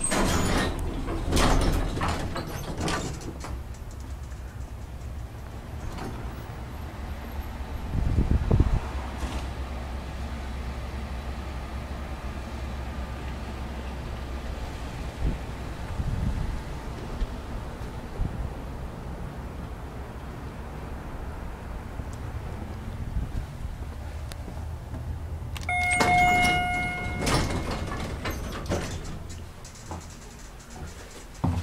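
Metal elevator doors sliding, with clicks and knocks of handling in the first few seconds. A steady low rumble follows, with a thump about eight seconds in. A short electronic beep comes near the end, then more knocks.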